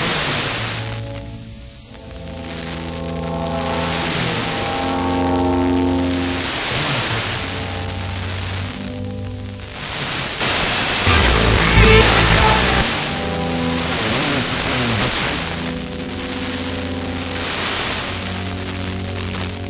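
Instrumental music from France Musique's 93.2 MHz transmitter (Avignon/Mont Ventoux, about 1650 km away) received by sporadic-E on an FM car radio, fading in and out under hiss. The music dips almost out about two seconds in, and a loud rush of hiss and rumbling static swamps it about eleven seconds in before the music returns.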